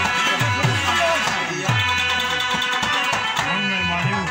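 Live Pashto folk music: tabla drumming over a harmonium's sustained chords. The low bass-drum strokes bend in pitch.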